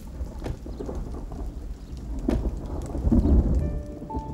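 Steady rain falling, with a low rumble of thunder that swells to its loudest about three seconds in.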